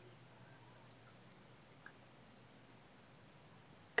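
Near silence: faint room tone, with one small faint tick a little under two seconds in as fingers work the copper wire of the pendant.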